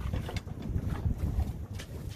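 Wind buffeting the phone's microphone on an open boat, a ragged low rumble, with a few faint clicks and knocks from handling the rod and gear.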